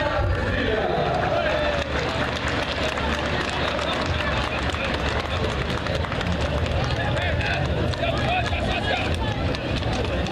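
Crowd chatter and voices outdoors, mixed with the irregular clip-clop of shod horses' hooves on pavement as riders and a horse-drawn cart pass close by.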